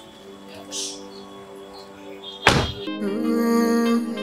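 A car door slammed shut once, about two and a half seconds in: a single heavy thunk over background music, which grows louder just after it.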